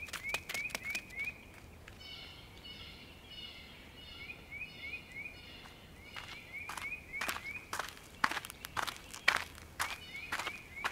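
Footsteps as a sound effect for the wolves walking, a run of quick knocks that grows denser in the second half. Short rising bird chirps repeat in the background, with a burst of fuller chirping calls a few seconds in.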